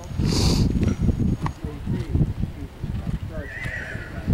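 A horse whinnies near the end, a wavering high call lasting under a second, over the hoofbeats of a horse cantering on arena sand. A short hissing burst comes about half a second in.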